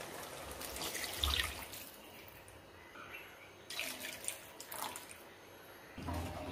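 Water poured from a bowl into a wok of sauce and vegetables, splashing for the first two seconds. After that it is quieter, with a few short sounds of a wooden spatula stirring the now watery gravy.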